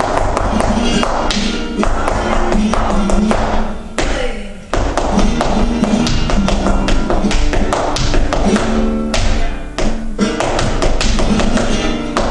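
Flamenco tientos music with guitar, over which flamenco shoes strike a wooden floor in quick heel-and-toe footwork taps. The music and taps drop briefly about four and a half seconds in, then carry on.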